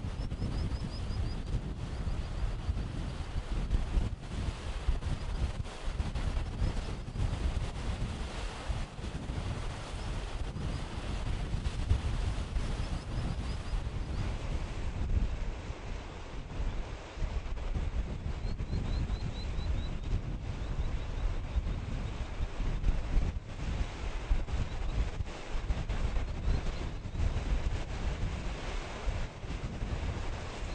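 Wind buffeting the microphone, an uneven gusting rumble, over outdoor hiss. A few faint high chirps can be heard about a second in and again past the middle.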